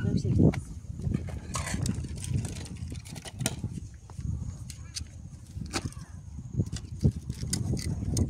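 Scattered clicks and knocks of dry sticks being handled and pushed into a small open wood fire under a cooking pot.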